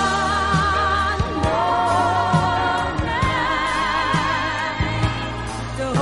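Studio pop ballad recording: a singing voice holds long notes with vibrato over bass and drums.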